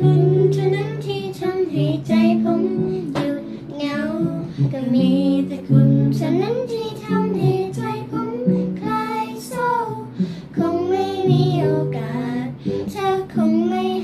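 Singing of a Thai pop song over instrumental accompaniment, the melody moving in long held notes throughout.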